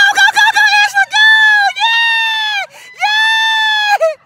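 A high-pitched voice laughing in quick, wavering pulses, then letting out three long, held squeals of excitement.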